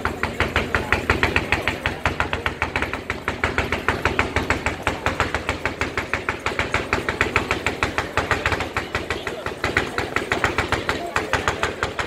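Fireworks firing in a rapid, even string of sharp bangs, several a second, as a barrage of shells launches and bursts.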